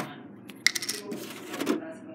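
A small hard object dropped onto a tiled counter: a click, then a brief clattering rattle about two-thirds of a second in as it bounces and settles, and a softer knock near the end.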